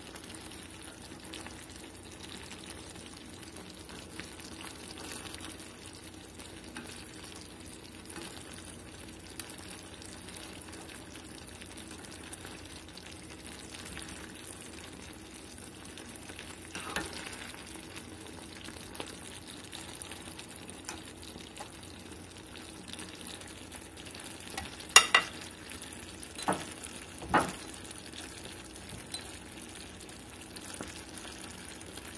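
Pork belly in a clay pot sizzling steadily on the stove. A few sharp knocks come near the end.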